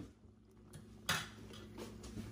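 Metal spoon stirring stew in an aluminium pot, scraping and clinking against the metal, with a sharp clank about a second in.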